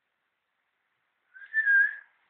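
A short whistled note, a person's whistle of about half a second that wavers and dips slightly in pitch, coming in about one and a half seconds in after a faint first blip.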